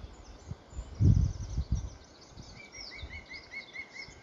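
Wild birds singing: scattered short chirps, then a quick run of about six evenly spaced notes in the second half, with a low rumble about a second in.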